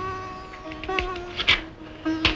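Background film music: sitar notes plucked one at a time, each ringing and fading, with a sharper, brighter stroke about one and a half seconds in.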